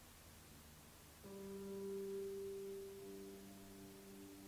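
Soft ambient background music: sustained low, humming tones fade in about a second in, and another note joins near the end.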